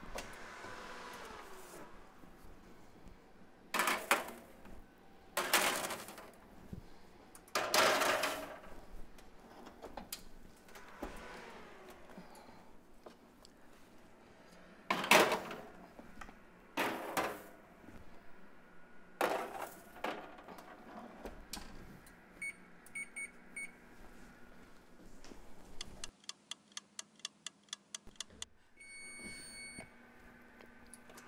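Metal cookie sheets clattering onto oven racks and wall-oven doors shutting, with several loud knocks over the first twenty seconds. Then a Frigidaire Gallery wall oven's keypad gives short beeps, a quick run of clicks and a longer beep near the end as the bake time is set.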